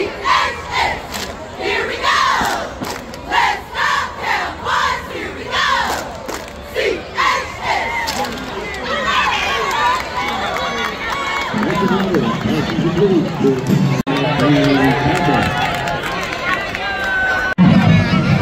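Cheer squad shouting a cheer in unison, with sharp rhythmic claps between the shouts for the first several seconds. Then a crowd cheering and calling out over one another.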